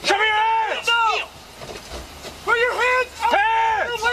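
A man shouting drawn-out commands, loud and high-pitched, in two bursts with a short pause between them.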